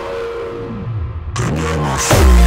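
Slow doomcore electronic track at a break: the highs fade out while gliding synth tones sweep in the low range, and the full sound comes back in about two-thirds of the way through, leading into the next section.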